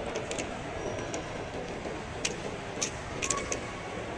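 Large indoor mall hall: a steady background hum with sharp footstep clicks on a polished stone floor, loudest a little past two seconds and around three seconds in.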